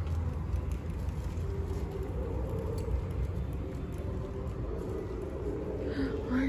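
Steady low rumble of background noise, with a faint hum joining it a couple of seconds in.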